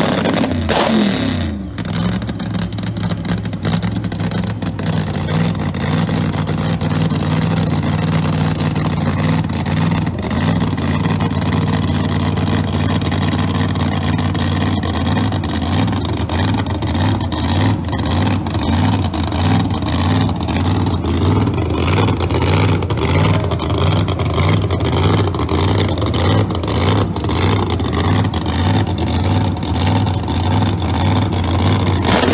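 Screw-supercharged Pro Mod drag-car engine idling with a rough, evenly pulsing lope, after a brief rev that dies away in the first two seconds.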